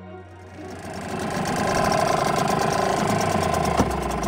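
Small outboard motor on a dinghy running steadily, fading in about a second in.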